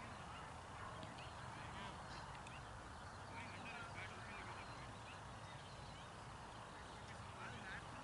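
Faint, scattered bird calls over quiet outdoor ambience.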